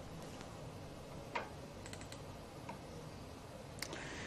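Faint background hiss with a few soft, scattered clicks.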